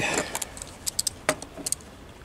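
A screwdriver with a T-bar attachment being handled, giving a scattering of light metallic clicks and clinks, the loudest about a second in.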